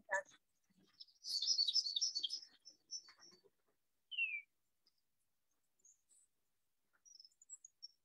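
Songbirds singing: a rapid twittering phrase of high notes about a second in, then a few short high notes and a single descending whistle about four seconds in, with scattered faint high chirps near the end. A brief sharp sound comes right at the start.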